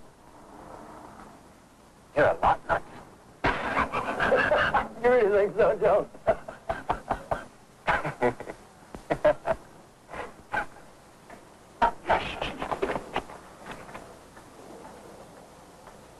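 Two men laughing and yelling in loud, broken bursts, with a longer wavering cry a few seconds in; the noise dies down near the end.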